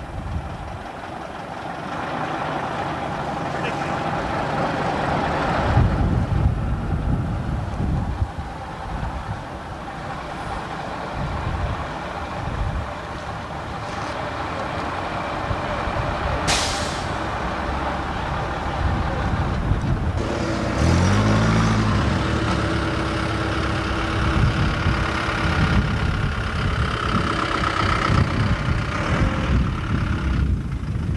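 Heavy diesel bus engines running, with a short, sharp hiss of compressed air from a bus's air brakes about halfway through, and wind rumbling on the microphone.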